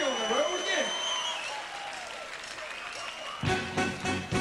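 A man's voice calling out over crowd applause and cheering, with a sustained high tone over the first second and a half. About three and a half seconds in, the full blues band comes in together: drums, bass and electric guitars with a steady beat.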